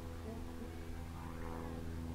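A steady low hum made of several fixed tones, unchanging throughout, under faint background noise.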